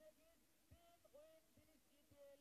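Near silence, with a faint voice far in the background.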